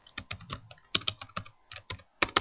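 Typing on a computer keyboard: about a dozen quick, uneven keystrokes.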